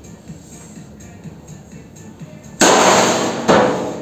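Sheet-steel hood of a homemade mini-tractor slamming shut with a loud metallic bang about two and a half seconds in, ringing briefly, followed by a second clang just under a second later.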